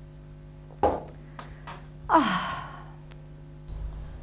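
A woman's sigh after a sip of whisky, one falling 'aah' about two seconds in, preceded by a short thump about a second in.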